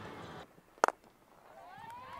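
A cricket bat strikes the ball once with a sharp crack a little under a second in: a full delivery driven away. Faint background noise comes before it, and overlapping rising calls from voices begin near the end.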